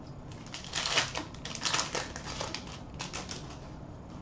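Hockey trading cards being shuffled and flicked through by hand: a quick, irregular run of light clicks and rustles, loudest about one to two seconds in.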